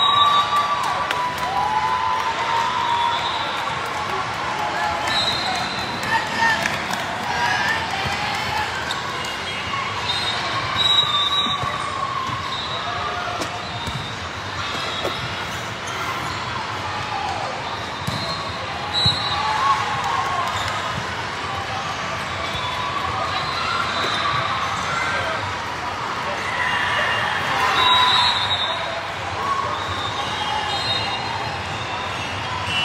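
Volleyball being played in a large echoing hall: ball hits and bounces thumping now and then amid steady chatter and shouts from players and spectators.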